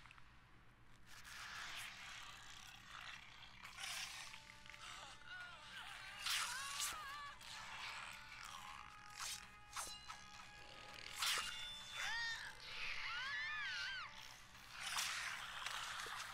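Soundtrack of an animated TV episode played back at low level: background music with warbling high glides and a few sharp hits.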